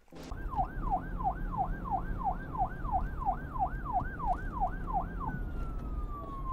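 Police-style siren sound effect in a fast yelp, its pitch sweeping up and down about two and a half times a second, then changing near the end to a single long tone gliding slowly down.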